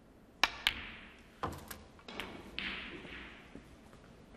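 Snooker cue tip striking the cue ball with a sharp click, then a second click as it hits an object ball, followed by a dull knock and further clicks as the balls strike each other and the cushions. A brief soft hiss trails off near the end.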